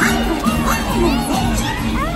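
Crowd of children and adults shouting and cheering over loud music from a live show.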